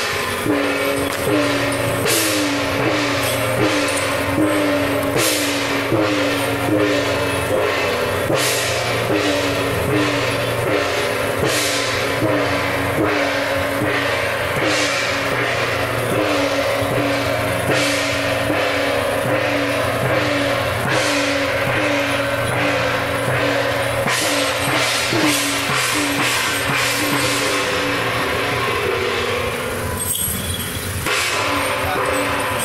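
Temple-procession percussion: hand gongs struck in a steady beat of about two strokes a second, with cymbal crashes over them.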